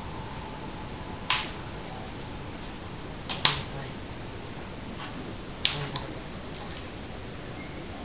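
Two hollow-seed spinning tops spinning on a stretched cloth. A faint steady hum from the tops fades out in the first couple of seconds, then a low steady hiss is broken by about four short, sharp clicks.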